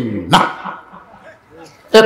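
A man's voice through a microphone and loudspeakers: one short, sharp spoken syllable, then a pause of about a second and a half, before loud speech starts again at the end.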